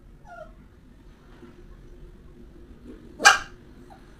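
A dog gives a short, high, falling whine near the start, then one loud bark about three seconds in.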